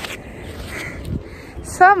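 Low, steady wind noise on the microphone during an outdoor walk, with a woman's voice starting near the end.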